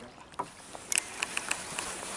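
Sharp mechanical clicks from a Shimano Exsence DC baitcasting reel being handled after a cast: one loud click about a second in, then four lighter clicks in quick succession.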